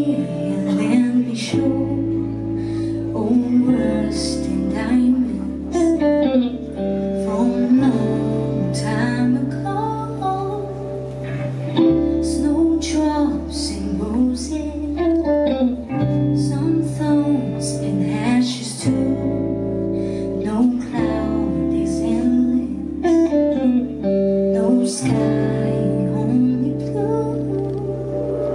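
Live band performance: a woman sings lead over electric guitars and drums, with cymbal strokes and sustained bass notes that change every two to four seconds.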